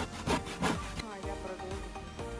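A few strokes of a hand saw cutting through an old weathered wooden board, then background music takes over about a second in.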